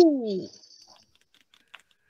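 A man's laugh trailing off in one long falling pitch, then a few faint clicks.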